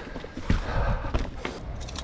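Chromag Rootdown hardtail mountain bike rolling over a dirt trail: tyre noise and rattling, a low thump about half a second in, and a quick run of rapid clicks near the end.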